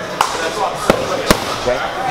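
Boxing gloves and focus mitts smacking together in a padwork drill: three sharp slaps, the last two close together in the second half.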